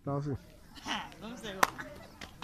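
A man talking in short phrases, with one sharp click about one and a half seconds in, the loudest sound here.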